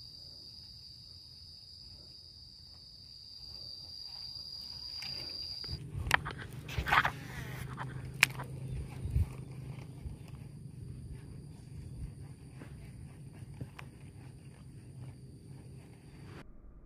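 An insect trills steadily at a high pitch, then stops about six seconds in. After that there is a low hum with a few sharp knocks.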